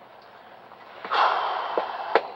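A person letting out one hard, breathy exhale, like a sigh or huff, about a second in, fading out over most of a second.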